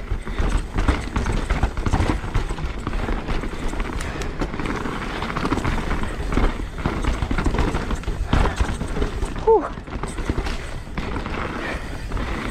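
Mountain bike rolling down a loose, rocky dirt trail: tyres crunching over gravel and rocks with frequent irregular knocks and rattles from the bike, over a constant low rumble on the camera microphone. A brief vocal sound from the rider about nine and a half seconds in.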